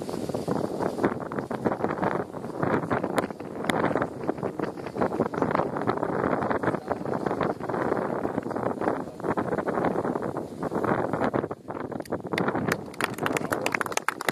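Gusty wind buffeting the microphone, a loud rumbling noise that rises and falls unevenly. Near the end, a quick run of sharp clicks comes in over it.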